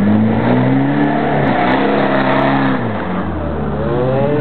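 Land Rover Discovery engine revving hard under load as it drives out of a muddy trench. It rises in two surges, holds high, drops back about three seconds in, then starts climbing again at the end.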